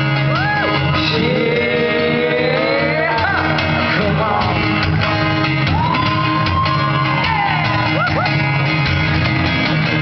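Live music: a man singing over a strummed acoustic guitar, amplified through a PA in a concert hall, with long held and sliding vocal notes.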